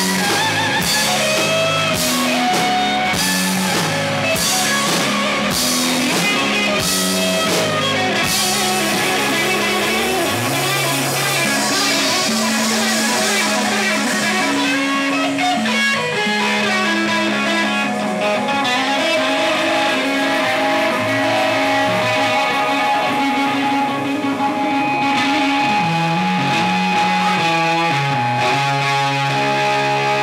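Live rock band playing an instrumental passage on electric guitar, bass guitar and drum kit. The drums and cymbals drop out about ten seconds in, leaving the guitars and bass ringing on held notes.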